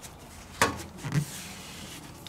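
A cloth dampened with mineral spirits softly rubbing along rubber window weather stripping, with a sharp click about half a second in.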